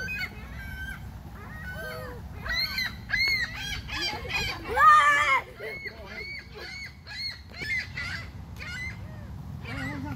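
A flock of gulls calling, many short arched cries one after another, the loudest and fullest cry about five seconds in.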